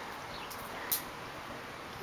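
Quiet outdoor background hiss, with one brief, sharp high-pitched tick about a second in.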